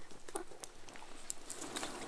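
Wood fire crackling in a metal brazier: scattered small pops and snaps over a low hiss.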